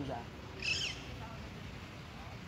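A bird gives one short, high, warbling call a little over half a second in, against a quiet outdoor background.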